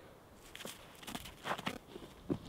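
A small dog digging in snow with its front paws: a string of faint, short crunching scratches starting about half a second in.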